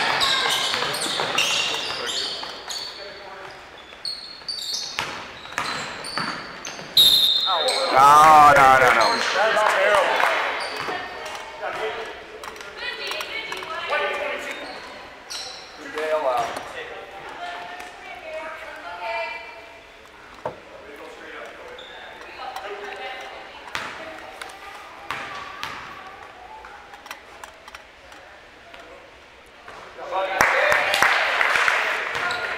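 Gymnasium sound during a youth basketball game: a basketball bouncing on the hardwood floor, thuds and indistinct voices of players and spectators, echoing in the large hall. About seven seconds in, a short high note sounds and is followed by a couple of seconds of loud shouting. After that it settles to quieter chatter.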